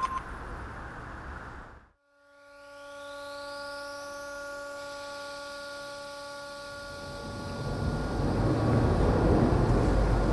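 Polybahn funicular's cable drive machinery running: a steady electric hum, with a high whine rising in pitch as it gathers speed. About two seconds from the end, low street rumble swells up.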